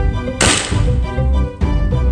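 Sodium metal in a bucket of water reacting violently and exploding: one sharp bang about half a second in, trailing off over about a second. Background music with a steady beat plays throughout.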